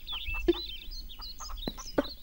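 Birds chirping: many short, high chirps and twitters scattered throughout, with a few sharp clicks.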